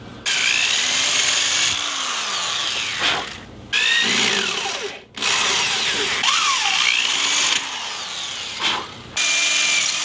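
Electric drill boring holes through purpleheart wood handle scales, run in four bursts with short pauses between. Its motor speed rises and falls as the trigger is squeezed and eased.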